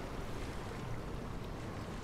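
Steady outdoor ambience: an even, low rush with no distinct events.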